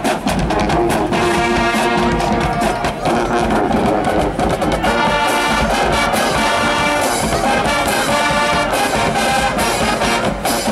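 A high school marching band plays a loud brass tune of trumpets and trombones over a drumline beat. About halfway through the brass grows fuller and brighter.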